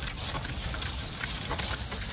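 A horse-drawn cart moving across a soft grass field: a steady low rumble with faint irregular pattering and no distinct hoofbeats.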